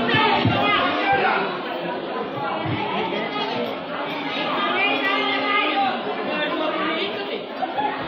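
Many voices talking at once in a lively chatter, with an acoustic guitar playing underneath.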